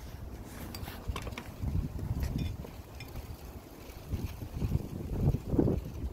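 Wind buffeting the microphone in uneven gusts, loudest near the end, with a few faint clicks from a glass jar and plastic tubing being handled.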